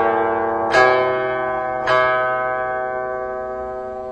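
Slow background music on a plucked string instrument: single notes plucked about a second apart, each left to ring and fade.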